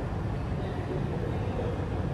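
Steady low rumble of background noise in a large indoor sports hall, with no distinct events.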